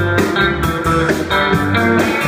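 Live blues band playing: an amplified six-string cigar box guitar leads over electric bass and drum kit.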